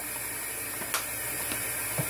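A steady hiss in a small kitchen, with one sharp click about a second in as a plastic seasoning bottle is put down on the counter.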